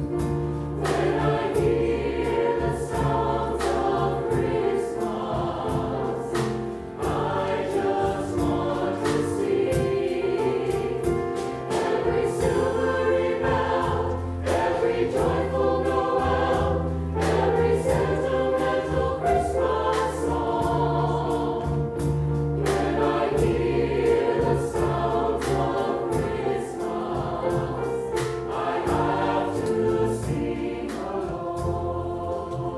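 Mixed choir of men and women singing in harmony, with a band's bass line and drum beat underneath.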